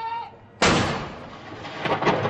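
A field gun firing a round of the 21-gun salute about half a second in: a sudden loud report that dies away slowly into a long rumbling echo. Another sharp crack comes near the end.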